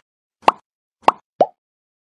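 Three short cartoon pop sound effects from an animated subscribe-button graphic, the first two about half a second apart and the third, lower one, right after.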